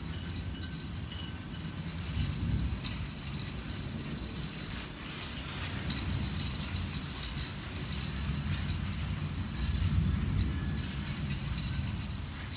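Approaching thunderstorm at night: a low rumble that swells about two seconds in and again near the end. Night insects chirp faintly and steadily in the high range.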